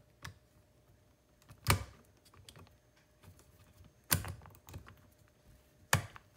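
Scattered sharp clicks and knocks of hard plastic and metal as the EEV Mate driver head is handled and fitted onto an electronic expansion valve's head. About five of them, the loudest about two seconds in, with a last sharp click near the end that signals the driver head has snapped into place.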